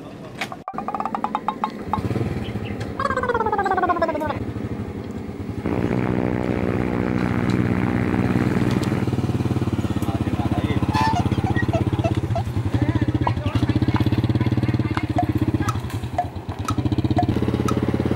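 Small single-cylinder engine of a Honda step-through motorcycle pulling a passenger trailer, catching about two seconds in and then running with a fast, even putter. It revs up harder for a few seconds as it pulls away. A short falling whistle-like glide comes about three seconds in.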